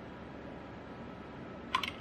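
Computer keyboard keys pressed in a quick run of clicks near the end, navigating and entering memory timing values in a BIOS menu. Before the clicks there is only low, steady background noise.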